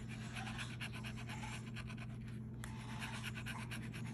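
A metal key-shaped scratcher scraping the latex coating off a scratch-off lottery ticket in many quick, short strokes, with a steady low hum underneath.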